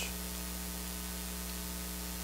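Steady electrical hum and hiss from the recording or sound system, with no other sound: room tone in a pause between sentences.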